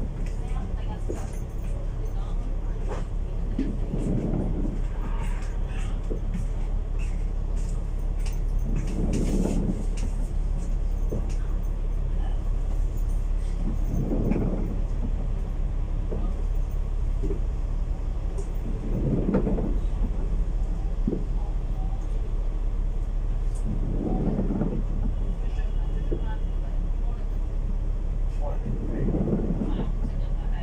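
Alexander Dennis Enviro500 MMC double-deck bus idling while held in traffic, heard inside on the upper deck: a steady low hum that swells about every five seconds.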